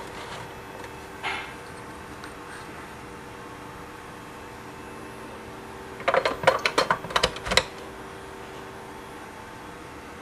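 Rechargeable batteries being pushed into the plastic slots of a battery charger: a click about a second in, then a quick run of clicks and rattles about six seconds in. A faint steady hum runs under it.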